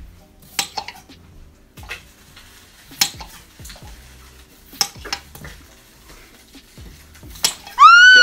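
Kitchen knives cutting potatoes into halves, the blades knocking through onto the counter in about a dozen sharp, irregular knocks. Near the end a loud, short, high-pitched squeal rises and falls.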